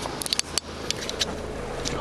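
Quick clicks and rustles of the camera being handled, bunched in the first half-second with a few more later, over a low steady hum from the Ford Focus's 1.6 TDCi diesel engine idling.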